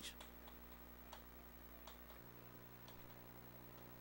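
Near silence: faint room tone with a low steady hum that shifts about halfway through, and a few faint, irregular clicks.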